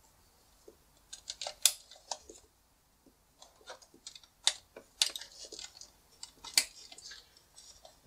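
Scattered sharp plastic clicks and taps from handling a plastic RJ45 cable tester as Ethernet cable plugs are pushed into its sockets.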